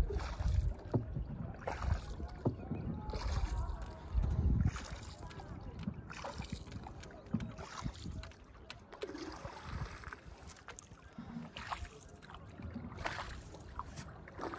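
Wooden paddle strokes of a hand-rowed boat on calm lake water: irregular splashes and drips with occasional knocks. There are a few stronger low thumps in the first five seconds, and the strokes are softer after that.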